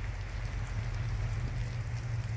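Steady low rumble of a slow-moving vehicle's engine, under an even hiss of falling wet snow.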